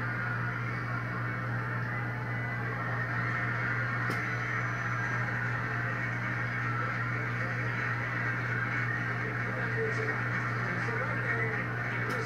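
Studio audience noise, laughter and applause, played through a TV speaker in a small room, with a steady low hum underneath.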